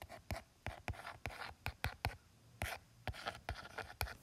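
Handwriting with a stylus on a tablet's glass screen: an uneven run of sharp taps mixed with a few short scratchy strokes.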